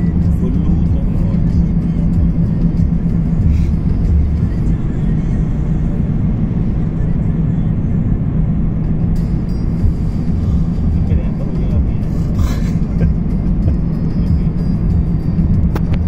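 Steady road and engine rumble heard inside a car's cabin while driving through a road tunnel, with a constant low drone.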